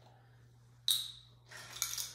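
Handling of a small vanilla extract bottle and metal measuring spoons at a countertop: one sharp clink with a short ring about a second in, then faint handling noises.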